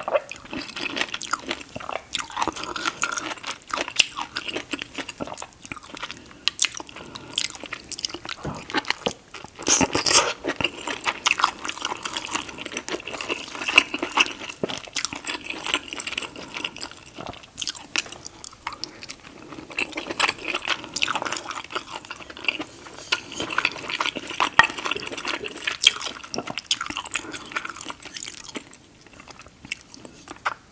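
Close-miked eating sounds: wet chewing and biting of sauce-drenched king crab seafood boil and pineapple, many short clicks and crunches in quick, uneven succession.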